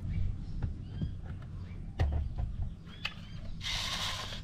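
Quiet outdoor sound: a low rumble with a few scattered clicks and faint short chirps, and a steady hiss that comes in shortly before the end.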